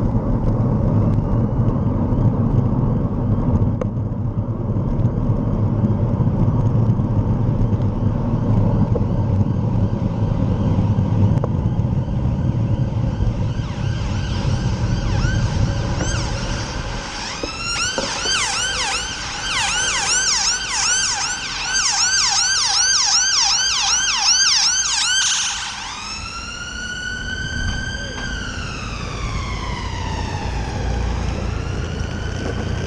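Low rumble of wind and traffic noise on a moving camera, then an emergency vehicle's siren starts about halfway through. It rises in pitch, switches to a fast yelp of quickly repeated rising sweeps for about eight seconds, and near the end changes to a slow wail that climbs and then falls.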